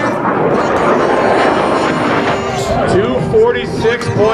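Bugatti Veyron Super Sport's quad-turbo W16 passing at very high speed: a rushing engine and wind noise. From about two and a half seconds in, spectators shout and cheer over it.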